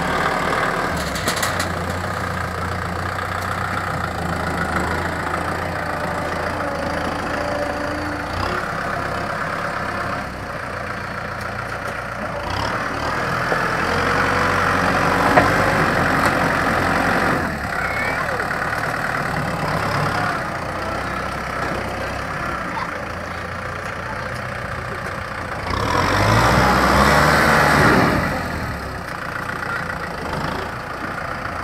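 Kubota M6040 SU tractor's four-cylinder diesel engine running steadily while its front blade pushes soil. It gets louder for a few seconds around the middle and again, most strongly, near the end as it works.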